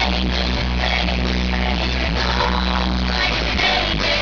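Live pop band music at an arena concert: an instrumental stretch with steady, heavy bass notes and drums and no singing, the bass line changing about three and a half seconds in.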